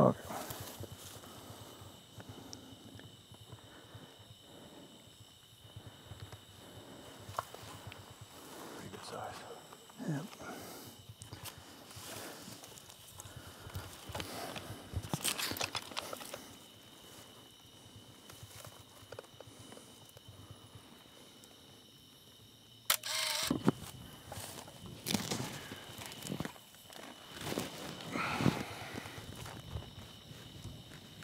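Scattered rustling and footsteps in dry wheat stubble, with soft knocks of gear being handled. A brief loud scrape or knock comes about three-quarters of the way through.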